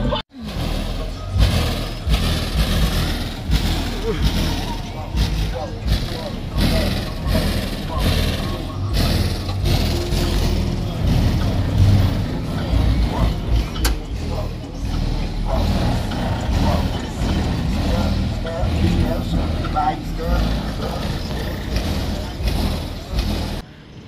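Car engine noise at a car meet, a loud, uneven rumble, with crowd voices mixed in.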